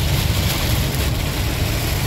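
Steady low drone of a Freightliner Cascadia semi-truck's diesel engine and drivetrain heard inside the cab at highway speed, with an even hiss of tyres and rain on the wet road over it.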